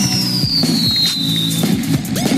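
Fireworks popping and crackling, with a high whistle that falls steadily in pitch over the first second and a half, over background music with sustained low notes.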